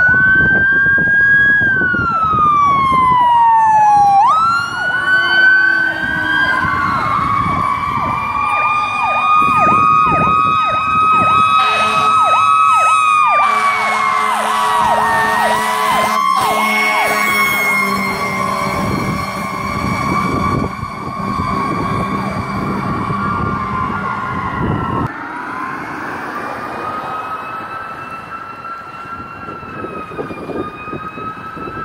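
Emergency vehicle sirens passing close: an ambulance and a fire tower truck with electronic sirens wailing and yelping over each other, and a few seconds of air horn midway. The loudest part cuts off suddenly near the end and a fainter wail carries on as they move away.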